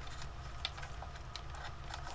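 Homemade Bedini energizer running, its spinning magnet rotor giving a steady low hum, with faint irregular ticks as the pickup coil's leads are handled to short it out.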